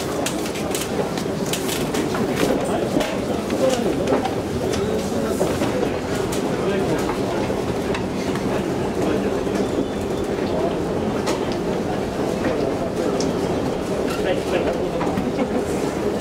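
Escalator running with a steady mechanical rumble while being ridden downward, mixed with background chatter of shoppers' voices; a few sharp clicks in the first seconds.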